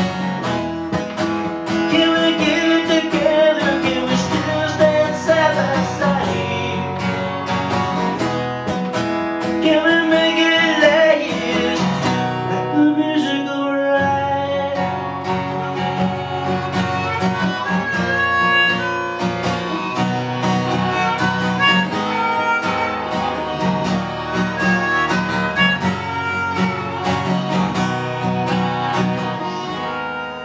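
Acoustic guitar played live, strummed chords mixed with picked notes, with a wavering melody line above it, in an instrumental passage of a song with no lyrics sung.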